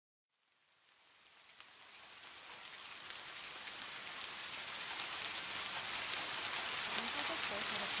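Steady rain fading in gradually from silence and growing louder, with scattered sharp drop ticks through the hiss.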